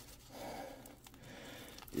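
Faint rustling and scratching of fingers picking at the edge of strong packing tape on a paper-wrapped package, with a few light ticks near the end.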